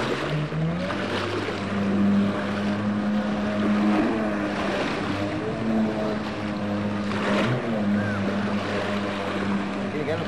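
Watercraft engine picking up speed about half a second in, then running at a steady pitch, with wind and water noise.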